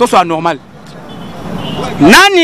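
A man's voice for about half a second, then outdoor street background noise without words that grows steadily louder until he speaks again.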